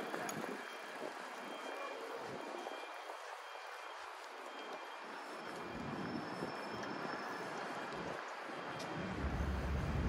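City street ambience: a steady wash of traffic noise, with a low rumble building in the last second.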